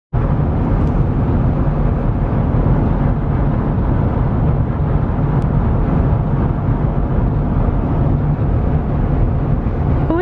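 Steady road and engine noise inside the cab of a moving Chevrolet pickup truck, a constant rumble heaviest in the low end.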